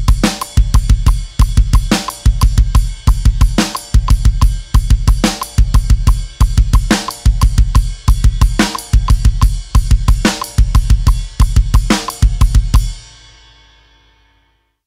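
Drum kit playing a heavy metal groove in 5/4 at 180 BPM, with kick drum and cymbals on every beat. A heavy accent returns at the top of each five-beat bar, about every 1.7 seconds, for roughly eight bars. Near the end the playing stops and the cymbals ring out and fade.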